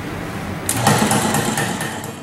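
Autotap tap density analyzer running, with a rapid mechanical clatter as it repeatedly lifts and drops the graduated cylinder of powder to measure tap density. The clatter gets louder under a second in.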